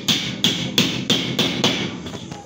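Hammer blows in a steady run of about three a second, nailing the perimeter wall angle for a suspended gypsum ceiling along the top of the wall; the strikes weaken near the end.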